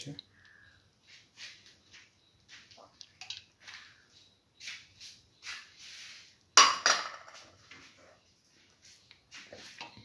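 Soaked split pigeon peas being tipped off a metal plate into a steel pan: a run of short, soft patters and slides as they drop in, with one loud clatter about six and a half seconds in as the plate knocks or scrapes against the pan.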